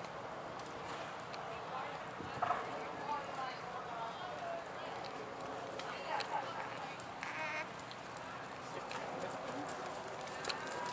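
Indistinct distant voices of people around an outdoor arena, with a horse's hoofbeats as it trots on sand footing.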